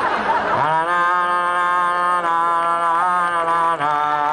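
A man's voice gives a breathy rushing sound, then holds one long, steady note for about three seconds.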